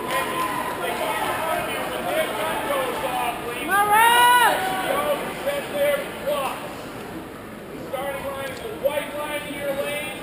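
Spectators' voices echoing in a large indoor track arena, a steady mix of calls and chatter from people cheering on runners. One loud, high-pitched shout comes about four seconds in.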